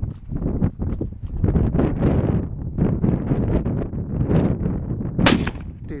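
A single shot from a CZ 550 Lux bolt-action rifle in .308 Winchester, about five seconds in, a sharp crack with a short tail. Steady wind noise rumbles on the microphone throughout.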